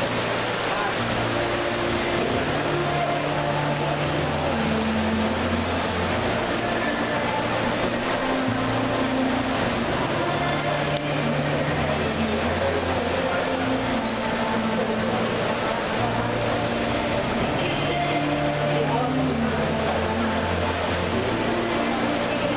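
Indoor swimming-pool hall din of voices and swimmers' splashing, with music playing under it: sustained low notes changing every second or two.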